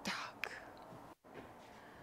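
A short, soft breath from the lecturer at the very start, fading quickly, then low room tone with a faint click about half a second in.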